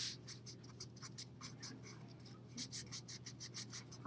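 Hands rubbing and pressing down on construction paper, smoothing a glued paper strip flat: a quick series of short rubbing strokes, several a second.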